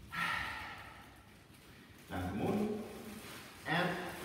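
Speech only: a few short spoken utterances from the two people, with pauses between.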